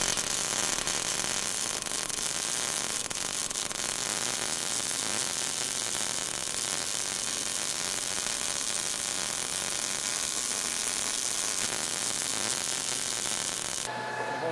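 Steady crackling hiss of a MIG welding arc, even throughout, stopping abruptly at the end.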